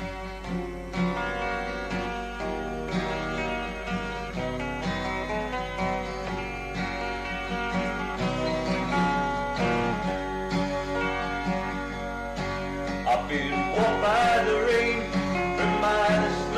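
Electric 12-string guitar picking the intro of a country-rock ballad, from an old mono cassette recording with a steady low hum underneath. A voice starts singing near the end.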